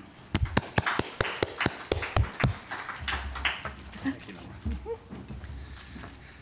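Sparse applause from a small audience: a few people clapping unevenly for about two seconds, then dying away. Soft low thumps and faint voices follow.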